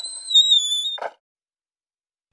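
A high, whistle-like tone held for about a second, falling slightly in pitch, followed by a brief short sound and then silence.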